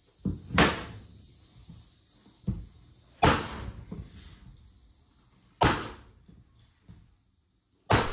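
Soft-faced mallet striking a pneumatic hardwood flooring nailer, each blow firing a nail through the edge of a solid oak board. Three loud blows a few seconds apart, with lighter knocks between.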